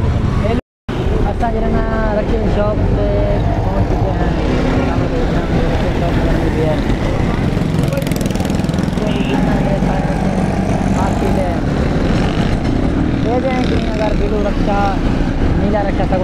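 A man talking in spurts over a steady low rumble of vehicle engines and traffic. The sound cuts out completely for a moment about a second in.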